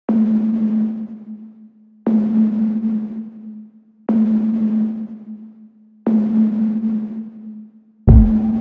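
Opening of an electronic R&B beat: one low synth note with a hissy wash, struck four times two seconds apart, each hit fading out over about a second and a half.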